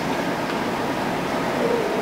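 Steady, even background hiss of room noise picked up by the open microphone, with no distinct events.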